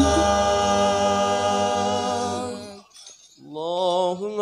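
Male voices singing sholawat through microphones, the group holding one long note that stops about three seconds in; after a short pause a single male voice starts the next line.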